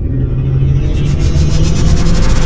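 Logo-intro sound effect: a loud, deep rumble that builds, with a fast-fluttering hiss rising over it from about a second in.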